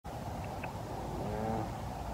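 Steady low rumble of outdoor background noise, with a man's voice starting about a second in.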